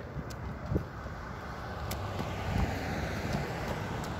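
Steady road noise of cars on the street, growing slightly louder, with wind on the microphone and a few faint thumps.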